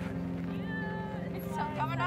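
A woman's high voice exclaiming over soft steady background music: first a held note, then a quick rising-and-falling squeal near the end, as she is lifted off the ground.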